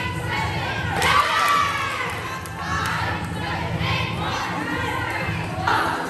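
A group of young women shouting and cheering over one another as a cheer stunt goes up, with a steady low hum underneath.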